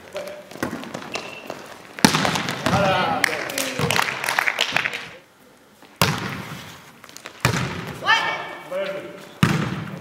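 A volleyball being struck during play in a large sports hall: a string of sharp hits and thuds that ring on in the room, with players' voices calling out between them.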